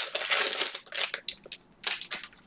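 Cellophane card-pack wrappers crinkling and crackling as they are handled: a dense crackle for about the first second, then scattered crackles and one more burst near the end.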